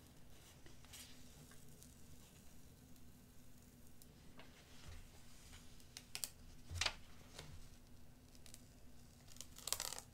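Faint crackling and rustling of transfer-paper backing being peeled slowly off a fabric patch after ironing, the transfer releasing now that it has cooled. A slightly louder rustle comes about seven seconds in and a few more near the end.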